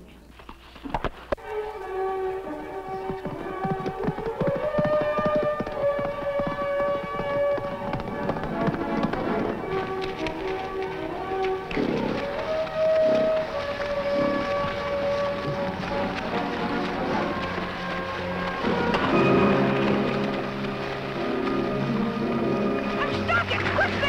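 Orchestral background score: a melody of held notes over sustained chords, growing fuller and louder near the end.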